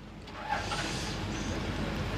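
A low rumble with a rushing noise swells up about half a second in and holds steady.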